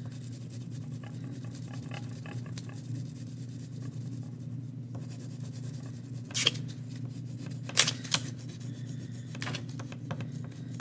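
Wax crayon scribbling back and forth on paper lying on a table, with a few louder, sharper scratchy strokes in the second half, over a steady low hum.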